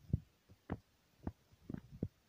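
Soft low thumps about twice a second at an even walking pace, most likely the footsteps of the person holding the camera.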